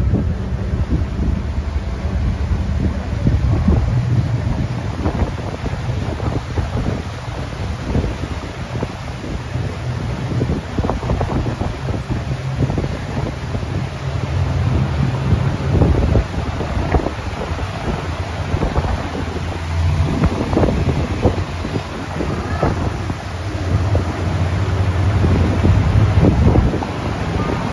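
Wind buffeting the microphone in irregular gusts on a moving boat, over the steady low hum of the boat's motor.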